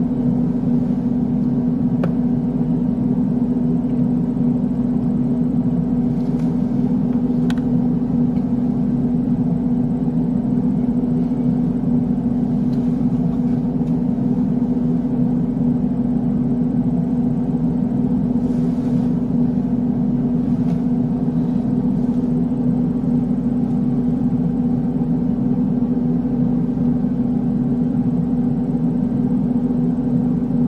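Steady low mechanical hum, one unchanging tone with overtones, with a few faint clicks.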